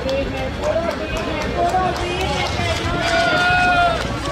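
Excited human shouting, several voices calling over one another, with one voice holding a long drawn-out shout in the last second and a half, the loudest part.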